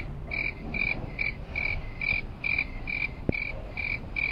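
Electronic warning beeper of a mechanical parking garage, one high tone repeating evenly about twice a second: the alarm that sounds while the car lift or turntable is moving. A single sharp click about three seconds in.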